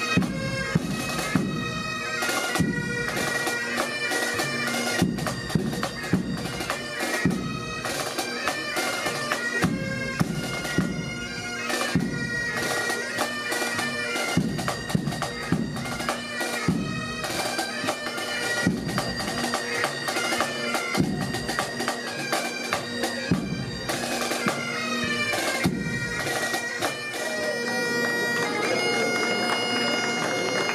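Pipe band playing: Highland bagpipes sound a melody over their steady drone, with snare and bass drums beating along. Near the end the drums drop out and the pipes carry on alone.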